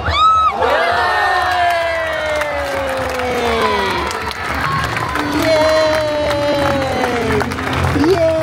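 A young boy shouting long cheers of "wheeeey" and "yaaaay", each falling slowly in pitch, over a stadium crowd cheering a goal.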